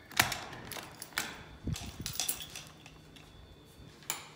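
A door being opened and passed through: a sharp click from the latch about a quarter second in, then several lighter clicks and knocks over the next two seconds.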